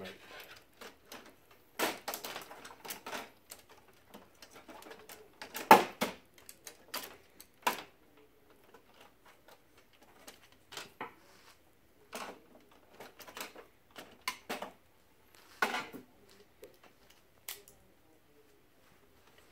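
Irregular plastic-and-metal clicks and knocks as a fuser unit is slid into an HP Color LaserJet Pro M452-series laser printer and seated in its frame, the loudest knock about six seconds in.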